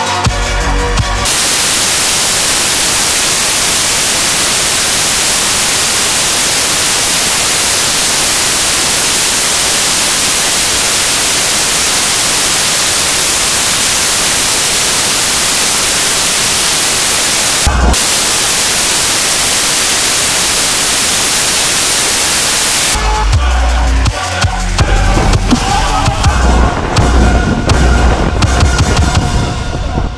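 Loud, steady hiss of white noise like radio static, lasting about twenty seconds with one brief break in the middle, set between stretches of electronic music with a beat.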